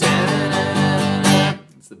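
Steel-string acoustic guitar strummed several times on a G chord, the song's turnaround. The chord rings loudly for about a second and a half, then stops.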